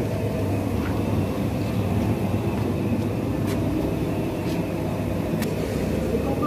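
Puffed-rice (muri) roasting machine running: a steady low mechanical hum, with a few faint clicks in the second half.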